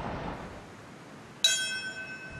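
A brass ceremonial bell struck once about a second and a half in, ringing on with several clear, steady high tones. Before the strike there is only faint street background.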